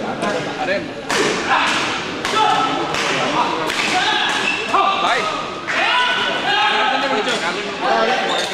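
Badminton doubles rally in a large echoing hall: sharp racket hits on the shuttlecock, about one every second, mixed with short high squeaks of shoes on the court floor.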